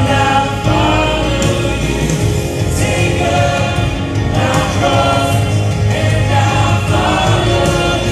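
Live gospel worship music: several voices singing into microphones over amplified accompaniment with a steady bass, carrying on without a break.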